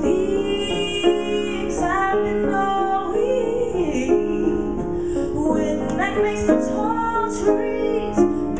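A woman singing into a handheld microphone over piano accompaniment, with long held notes and slides between them.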